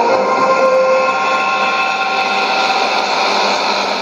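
The held last notes of a short musical interlude, fading away, heard through a shortwave AM receiver with a steady hiss of band noise behind them.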